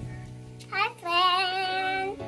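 Background music with steady sustained notes; a little under a second in, a child's voice comes in and sings one long note with vibrato over it.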